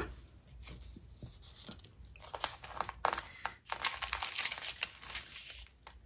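Thin Bible-paper pages rustling and crinkling as they are smoothed and turned by hand, in faint, irregular crackles that grow busier about two seconds in.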